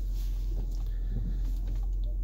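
Steady low hum of the Jeep Grand Cherokee's engine idling, heard inside the cabin, with a few faint soft taps.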